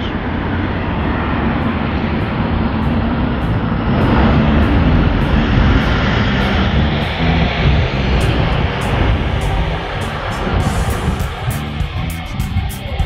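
Loud, steady city street noise with a low traffic rumble. Music with regular strummed strokes, a guitar, comes in toward the end.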